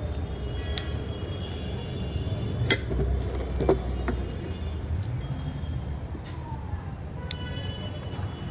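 Several sharp plastic clicks and taps as fingers work the small red rocker switch on a solar street light, the loudest a little under three seconds in, over a steady low background rumble.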